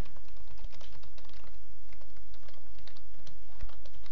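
Typing on a computer keyboard: quick, irregular keystrokes, over a steady low hum.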